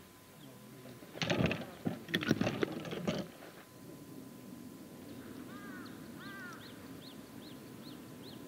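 Quiet outdoor ambience with birds: a high chirp repeated about three times a second and two short warbling calls in the second half. Earlier, about a second in, a brief low murmur of voices.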